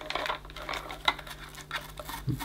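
Handling noise from a plastic vacuum cleaner floor head being turned over in the hands: a scatter of small, irregular plastic clicks and light knocks.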